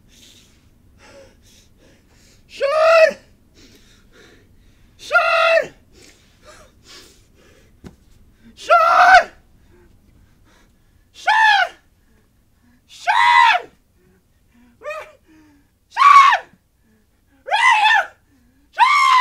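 A person screaming: eight short, high screams, each rising then falling in pitch, coming every two seconds or so, pitched higher toward the end.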